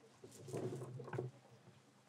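Dried seaweed pieces handled on a wooden table close to a microphone: light rustling and small clicks, mostly in the first second, then quieter.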